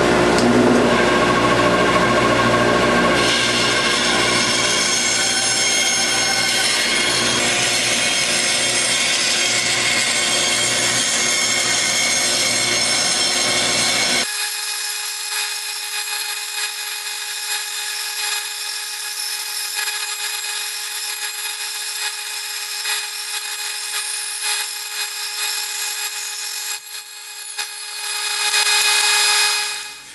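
Delta band saw running and cutting a circle out of a scrap MDF board, a steady machine sound. About halfway through it changes abruptly to a thinner, higher hum with one steady tone, and it swells briefly near the end.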